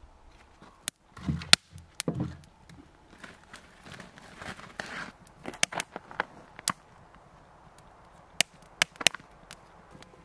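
Split-firewood campfire crackling and popping in a steel fire ring. A couple of duller knocks come in the first few seconds as logs are set on the metal grate.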